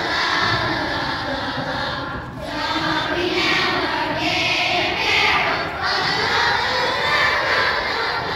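A large group of children singing a Christmas carol loudly together, in phrases of a few seconds each with brief breaths between them.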